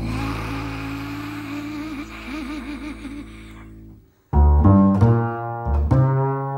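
Free-improvised music from double bass and voice: a low sustained bowed tone with a wavering pitch fades away, breaks off for a moment about four seconds in, then strong new notes enter twice.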